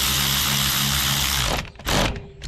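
Powered ratchet spinning a 5/16 socket to run a small bolt down into a plastic water pump housing. The motor runs steadily for about a second and a half and stops suddenly, then gives a short second burst near the end.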